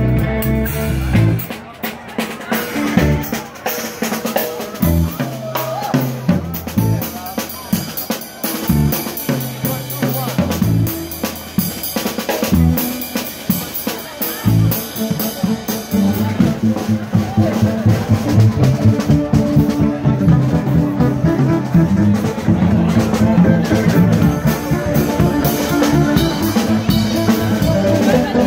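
Live band music led by a drum kit: a drum break with snare hits and sparse low bass notes, after which the drumming gets busier and the band builds back to full sound in the second half.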